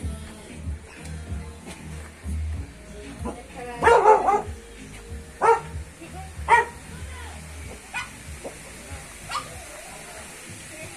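A dog barking: a loud burst of barks about four seconds in, then two single barks about a second apart.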